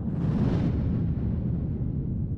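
Deep, rumbling logo-sting sound effect: it swells in with a brief airy hiss in the first half second, then holds as a steady low rumble.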